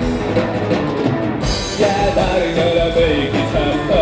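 Rock band playing live: electric guitar strummed over bass and drum kit.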